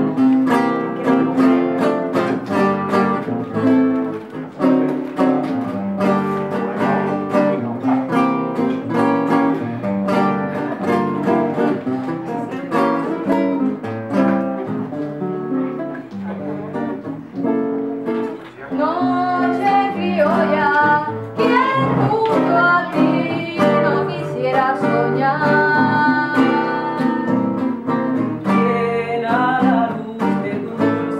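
Live Cuban song on acoustic guitar, strummed and picked throughout. A woman's voice sings in passages, most clearly about two-thirds of the way through and again near the end.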